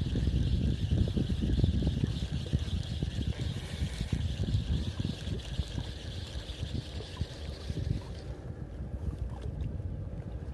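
Handling noise on a phone microphone held against a jacket: fabric rubbing and wind buffeting make an uneven low rumble with rustling. A thin high hiss underneath drops away about eight and a half seconds in.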